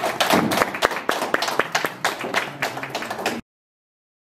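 Audience applauding, the clapping cutting off suddenly about three and a half seconds in.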